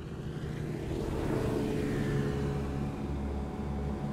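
A motorboat's engine running at a steady drone while under way, over a hiss of water.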